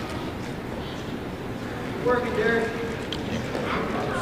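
A voice calls out briefly about two seconds in, over a steady background hubbub of people in a hall during a grappling match.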